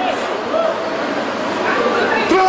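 A man's voice through a handheld microphone, in short broken vocal sounds rather than steady speech.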